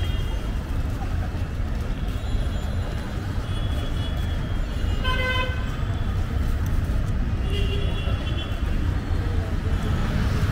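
Steady low rumble of street traffic, with short vehicle-horn toots about three and a half, five and eight seconds in.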